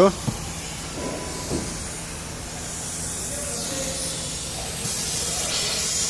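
Compressed air hissing steadily out of a leak in the truck's air-brake system, growing louder about five seconds in. A low engine hum runs under it: the engine is running to build air pressure.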